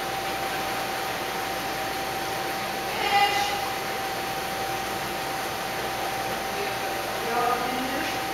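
Steady room hum with a thin high tone running under it, and two brief distant voices, one about three seconds in and one near the end.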